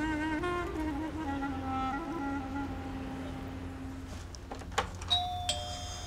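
Soft background music melody that fades out after about four seconds. Then a couple of sharp clicks and a doorbell chime ringing two notes near the end.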